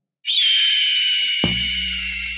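A loud, harsh, high-pitched screech like a bird of prey's cry, used as a sound effect in an intro. It starts a quarter second in, falling slightly in pitch and holding. About halfway through, a deep bass hit lands under it and an electronic beat begins.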